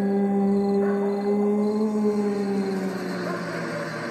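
A long, low droning tone in a horror soundtrack, holding one pitch, bending slightly up and back down about halfway through, and fading near the end.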